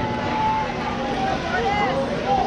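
Children's voices calling out across a ball field in short, high, overlapping shouts, over a steady low hum and some wind on the microphone.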